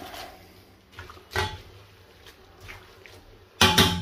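A utensil stirring spaghetti in a metal cooking pot, with a few light knocks against the pan and a louder clatter near the end.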